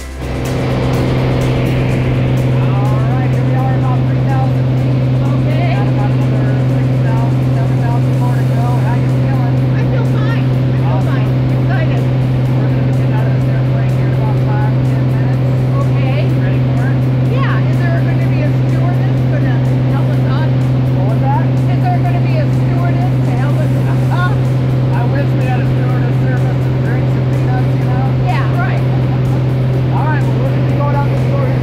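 A small single-engine propeller airplane's engine and propeller droning loudly and steadily, heard from inside the cabin in flight.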